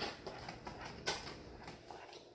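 European Doberman Pinscher chewing a mouthful of dry kibble: a run of faint crunches, with one louder crunch about a second in.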